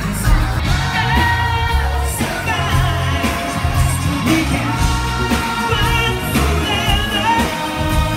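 A live pop band plays with a lead singer over a heavy bass line and drums, heard from the audience through a phone's microphone.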